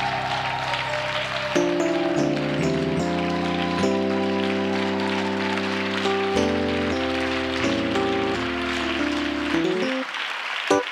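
Organ playing sustained chords that change every second or so, over a steady patter of congregation applause.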